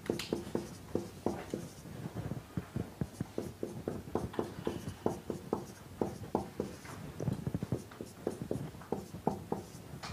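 Writing on a lecture board: an irregular run of short taps and strokes, several a second, as the constraints are written out.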